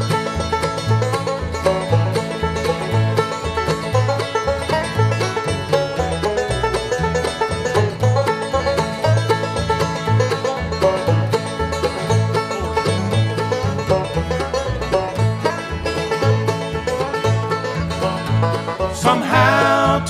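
Bluegrass band playing the instrumental introduction to a song, a banjo taking the lead over guitar, mandolin, fiddle and upright bass, with the bass keeping a steady beat. A man's voice starts singing near the end.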